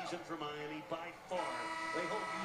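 Basketball game on TV with the commentator talking, then about a second and a half in a steady arena horn sounds as the game clock runs out, heard through the TV speaker.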